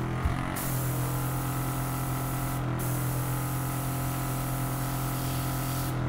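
Craftwell eBrush airbrush spraying liquid makeup: a continuous airy hiss over the steady hum of its compressor. The hiss cuts out briefly at the very start and again for a moment near the middle, as the spray is stopped and restarted.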